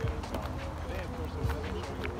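Footsteps on a woodland path while walking, with wind rumbling on the phone's microphone and faint voice-like sounds.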